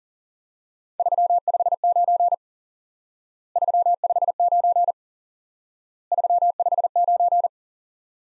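Morse code sent as a single steady tone at 40 words per minute: the signal report 359 keyed three times, in three groups of short and long beeps about 1.4 s each with pauses between.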